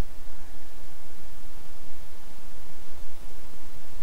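Steady hiss of a voice-over microphone's noise floor, with no distinct sounds.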